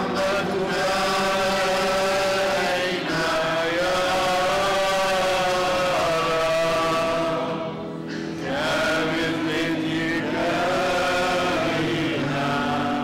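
Many voices singing a hymn together in long, held phrases, with a short break between phrases about eight seconds in.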